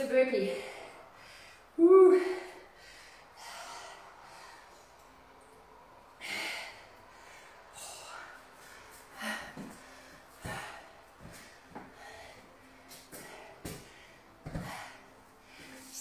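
A woman breathing hard and grunting with effort during a floor exercise. Two loud voiced grunts come in the first two seconds, then sharp exhaled breaths every second or two, with a few soft knocks.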